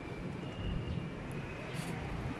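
Faint, steady low rumble of outdoor background noise, with no distinct event standing out.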